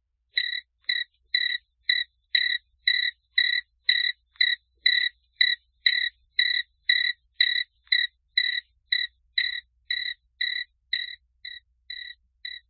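Cricket chirping in a steady rhythm of about two short chirps a second, growing a little fainter near the end.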